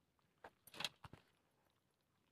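A few short metallic clinks and knocks, bunched in the first second, as a goat feeding from a metal feed bowl bumps it with its muzzle and horns.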